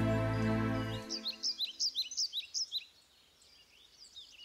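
Sustained background music dying away about a second in, followed by birds chirping: a quick run of short, high chirps for about two seconds, then a few fainter ones.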